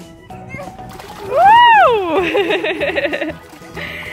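A voice lets out a loud whoop that rises and falls in pitch about a second and a half in, followed by the splash of a child landing in an inflatable paddling pool, with background music throughout.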